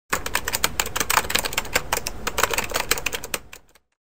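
Rapid, uneven typewriter-style key clicks, an intro sound effect, dying away about half a second before the end.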